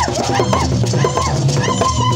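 A group of hand drums played in a quick steady rhythm, with voices singing into a microphone in short phrases that slide up and down in pitch.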